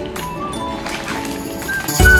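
Background music with held melody notes.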